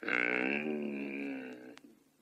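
A low, drawn-out growl from a man's voice imitating a bear, lasting about a second and a half and fading near the end.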